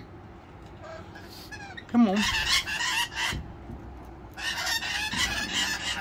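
Rainbow lorikeets screeching in two harsh, rapid bouts: a short one about two seconds in and a longer one near the end.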